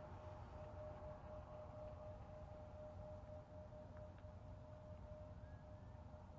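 Near silence: a faint steady low rumble of outdoor background, with a faint steady hum running throughout.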